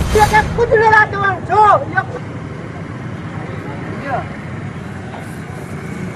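Raised voices for about the first two seconds, then a steady bed of outdoor street noise.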